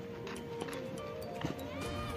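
Background music with held notes over a light, even beat.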